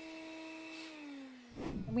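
Hum of a power tool's electric motor, steady and then sliding down in pitch as it winds down after being switched off. A short rustle follows near the end.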